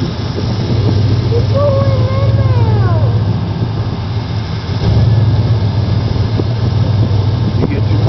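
Big-block V8 of a lifted pickup running at low revs, its rumble swelling twice as the truck creeps forward. A voice calls out briefly about a second and a half in.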